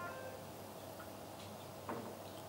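A pause in speech: faint room tone with a single short click near the end.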